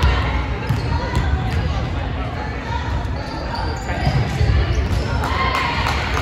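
Volleyballs being hit and bouncing on a hardwood gym floor during a hitting drill: a handful of sharp, irregular smacks echoing in a large hall.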